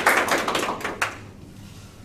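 A small group of people applauding with their hands, the clapping dying away about a second in.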